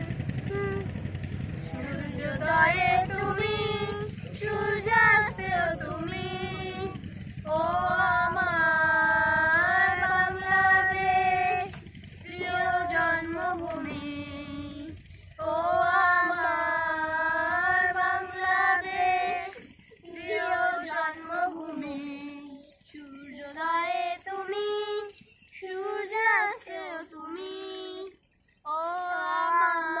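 Children and a woman singing a song together without accompaniment, in long held phrases broken by short pauses for breath. A low hum sits beneath the voices in the first few seconds.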